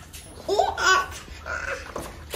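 A small child laughing in two short bursts, about half a second in and again near the end.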